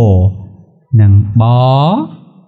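A man's voice drawing out two long syllables in a chant-like way, as when sounding out Khmer spelling aloud. The second syllable starts about a second in and rises in pitch.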